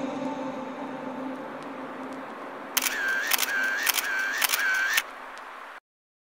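The tail of the music fading out, then a camera shutter sound effect: four quick click-whir-click cycles, a little under two a second, ending sharply.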